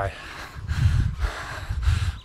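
A runner breathing hard and panting, out of breath just after finishing a hard 1 km interval at about 5k pace, with low rumbles of wind buffeting the microphone about a second in and near the end.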